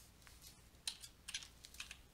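Faint stylus clicks and taps on a drawing tablet: a few short, high-pitched clicks about a second in and again near the end.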